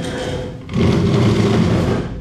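A school desk dragged across the classroom floor, a coarse scraping rumble that starts suddenly just under a second in and runs for about a second.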